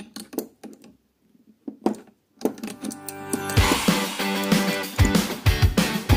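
A few sharp metal clicks from adjustable wrenches working a brass compression-fitting nut on copper pipe, then background music that comes in about two and a half seconds in and picks up a heavy low beat about a second later.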